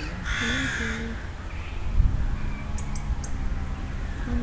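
A single harsh, caw-like animal call lasting under a second near the start, over a steady low background rumble.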